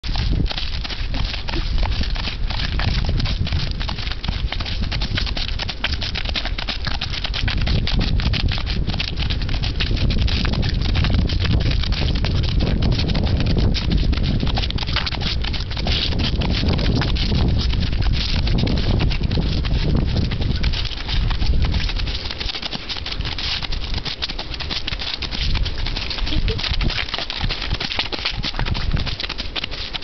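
Horses' hoofbeats along a road verge under heavy wind rumble on the microphone. The rumble drops away about two-thirds of the way through.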